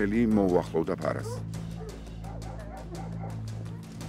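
Caucasian shepherd dogs barking several times in the first second, over a steady low musical drone that carries on through the rest.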